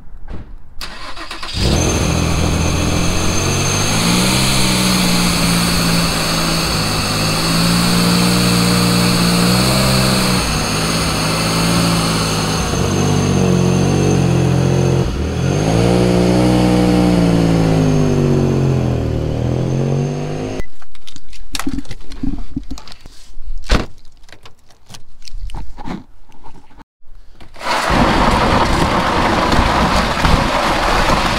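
Infiniti G coupe's V6 engine running under light throttle as the lowered car is eased slowly out of a driveway, its pitch rising and falling. It comes in suddenly about two seconds in and stops abruptly around twenty seconds in, followed by scattered clicks and knocks.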